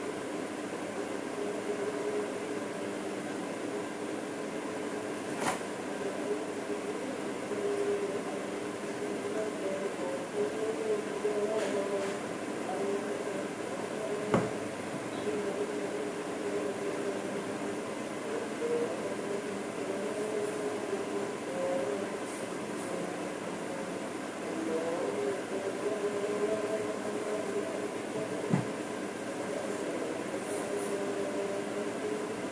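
A steady mechanical hum runs throughout, with a few short sharp knocks; the loudest knock comes about fourteen seconds in.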